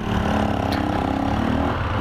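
Motorcycle engine running at a steady, low-revving note as the bike pulls away slowly.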